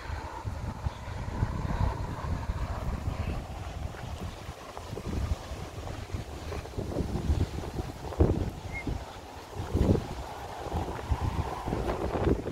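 Wind buffeting the microphone: an uneven low rumble that rises and falls in gusts, with two stronger bumps about eight and ten seconds in.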